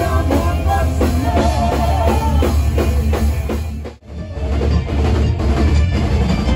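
Live metal band rehearsal music: drums, bass and keyboards with singing over them. About four seconds in, the music dips out for an instant and comes back with the band and drums.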